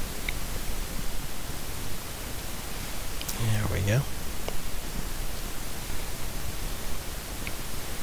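Steady background hiss from the recording, with a brief murmured vocal sound from the narrator about three and a half seconds in.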